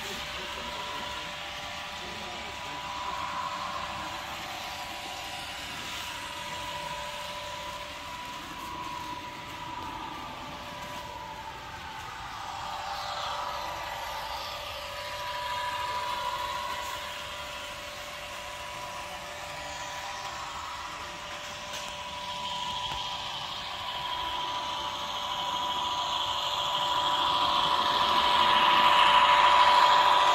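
Sound decoder in an N-scale Con-Cor Pioneer Zephyr model train playing its engine sound through a small onboard speaker while the model runs, with a steady tone throughout and growing louder near the end as the train comes close.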